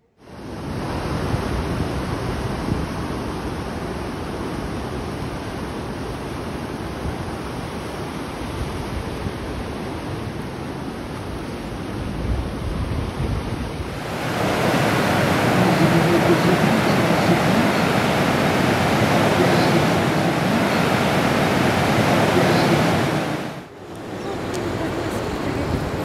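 Ocean surf breaking and washing in, with wind rumbling on the microphone; the wash gets louder and brighter about two-thirds of the way through.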